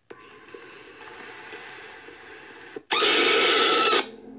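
A low, hissy ambience, then nearly three seconds in a sudden, very loud, harsh screech that lasts about a second and cuts off abruptly: a jump-scare blast in a scary-video clip.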